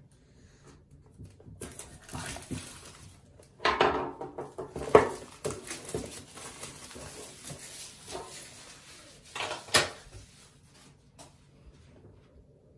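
A hobby knife slitting the seals of a small cardboard box, then the box being handled and worked open: irregular scraping and rustling of cardboard with a few sharp knocks. The loudest handling comes about four to five seconds in and again near ten seconds.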